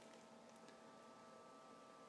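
Near silence with a faint steady hum of a few thin tones from the small computer fan that blows air into a pellet-burning rocket stove.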